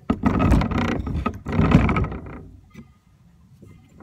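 Handling noise from a large drone with a heavy spotlight mounted under it being set down on a table: two loud bursts of knocking and scraping in the first two seconds, then quieter.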